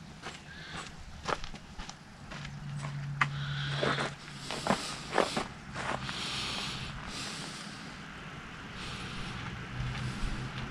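Footsteps on dry, sandy dirt, a handful of scuffing crunches over the first six seconds, with a low steady engine hum from a distant vehicle at times.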